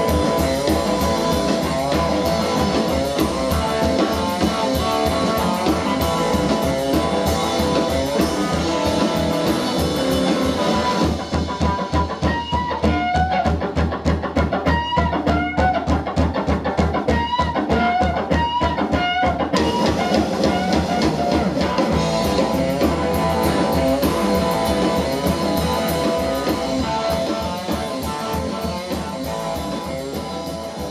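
Live rockabilly band playing an instrumental passage: hollow-body electric guitar lead over upright bass and drums. About eleven seconds in, the cymbals drop out for some eight seconds, leaving bent guitar notes over a clicking rhythm, before the full band comes back in.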